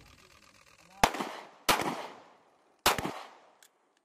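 Three shots from an M18 9 mm service pistol, the first two about two-thirds of a second apart and the third about a second later, each trailing off in a short echo.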